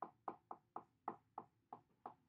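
Felt-tip marker tapping and stroking against a whiteboard during quick hatching: a run of about seven sharp taps, three to four a second.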